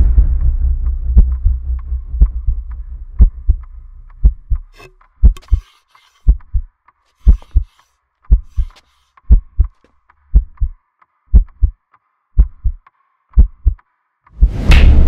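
Heartbeat sound effect on a film soundtrack: pairs of low, short thumps in a lub-dub rhythm, about once a second. It comes in about five seconds in, as a low rumble dies away.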